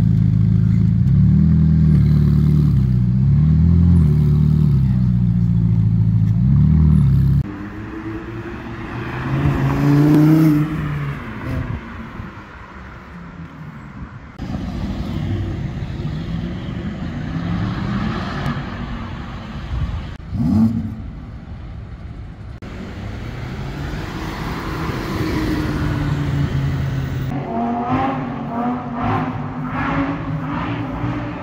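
Sports car engines in a run of edited clips: first a red Ferrari's engine loud at close range, its pitch wavering up and down as it is revved, cut off abruptly after about seven seconds. Then quieter street traffic with engines rising and falling in pitch as cars accelerate past, a short sharp rev about two-thirds through, and another car accelerating near the end.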